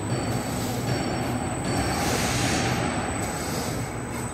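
Paper roll-to-sheet crosscutting machine running steadily as it cuts a paper roll into sheets: a continuous mechanical hum with a thin, steady high whine.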